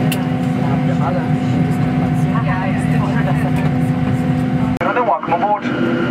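Steady low hum of a parked airliner's cabin, a Boeing 737-900, with faint voices under it. The hum cuts off suddenly about five seconds in, and a cabin announcement over the public-address system begins.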